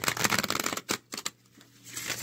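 A deck of tarot cards being shuffled by hand, a rapid flicking and riffling of cards that pauses briefly past the middle and starts again near the end.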